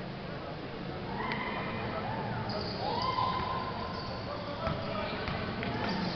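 Basketball game sounds in a gym: spectators' voices and shouts, with one long rising-and-falling yell about three seconds in, and a few sharp thuds of the ball on the court near the end.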